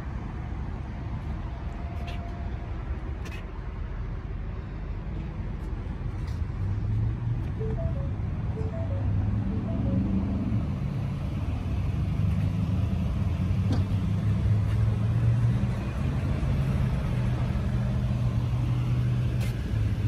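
Steady low vehicle rumble that grows somewhat louder about a third of the way in, with a few faint short tones around eight seconds in.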